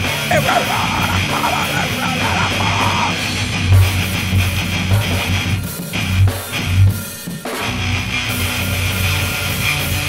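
Instrumental stretch of a rock song with guitar and drum kit and no singing, with heavy low hits in the middle and a brief drop-out a little past halfway.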